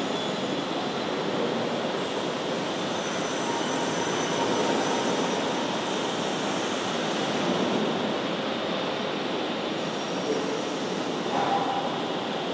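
Bargstedt TLF 411 panel storage gantry travelling along its overhead rails with a steady rolling mechanical noise, with faint high whines about three to five seconds in.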